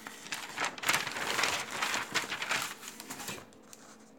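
Crinkling, rustling noise of crinkly material being handled close to the microphone, lasting about three seconds and stopping shortly before the end.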